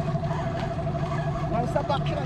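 A small 15 hp outboard motor running at a steady low speed with an even hum.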